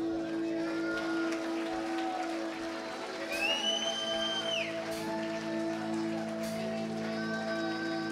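Live worship band music: a sustained chord held steadily underneath, with voices singing over it and a high held note in the middle that falls away at its end.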